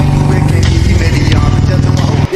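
Royal Enfield Classic 350's single-cylinder engine running at a steady, even exhaust beat.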